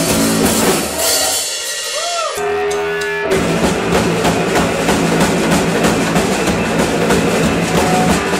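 Live rock band playing loud, with electric guitars and a drum kit. About a second in, the band briefly drops out, leaving a single held guitar note that bends up and back down, then drums and full band crash back in a little after two seconds and play on.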